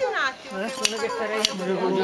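Steel hand shears cutting through a sheep's fleece: two sharp metallic clicks of the blades closing, under a person's voice.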